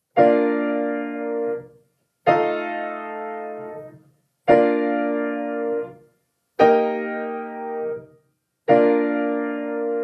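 Piano playing five block chords about two seconds apart, each held and then released: the I–V7–I–IV–I cadence in B-flat major.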